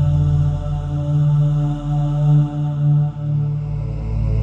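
Ambient background music with a low, chant-like drone of long held notes that shift in pitch a few times.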